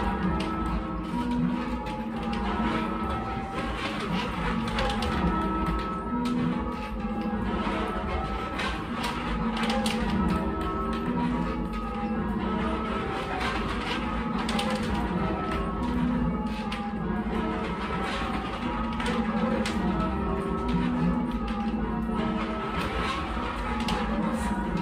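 A ring of eight church bells rung full-circle by a band, the bells striking one after another in a steady, continuous even rhythm, heard from the ringing chamber below the bells.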